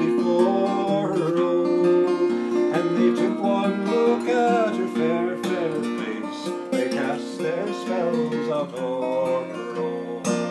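Acoustic guitar strummed as accompaniment to a traditional folk ballad, with a man's voice singing the melody over it.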